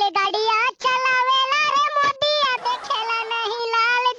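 High-pitched, pitch-shifted cartoon voice singing in quick syllables with a few held notes.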